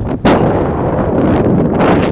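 Wind buffeting the camera's microphone: loud, dense noise heaviest in the low end, with one brief drop shortly after the start.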